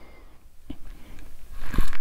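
Quiet room tone with a faint low hum and two light clicks, one just under a second in and one near the end, where a man's voice begins.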